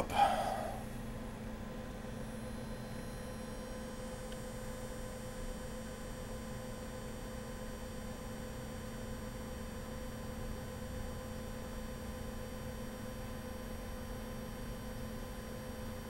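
Steady electrical hum with a few faint, unchanging tones from a running valve-amplifier test bench: the amp is driven by a signal generator at full volume into a dummy load.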